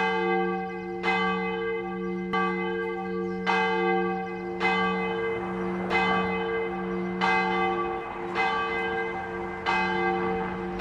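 A single church bell ringing, struck steadily about once every second and a quarter, each stroke ringing on under the next with a deep lasting hum.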